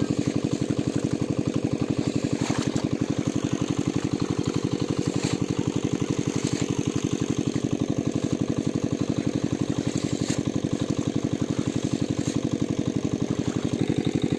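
A small engine running steadily with a fast, even beat that does not change.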